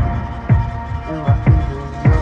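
Background electronic pop music in a break between sung lines: sustained synth chords with a few deep, pitch-dropping bass-drum thumps.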